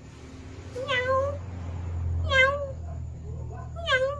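Domestic cat meowing three times, about a second and a half apart, each a short call that dips and levels off in pitch.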